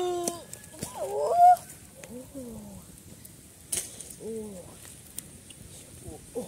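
A run of short, wordless, honk-like vocal cries, each bending up then down in pitch. The loudest comes about a second and a half in, and weaker ones follow.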